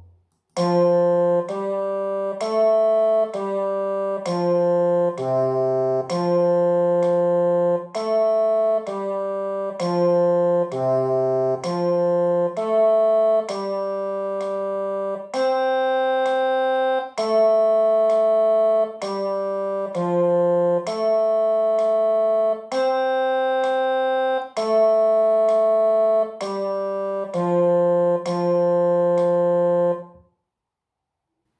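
Keyboard instrument playing a slow sight-singing exercise melody in two-four time over low accompanying notes, each note held evenly without fading, until it stops right at the end.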